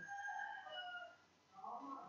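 A faint background animal call, drawn out for about a second at a steady pitch, then fading.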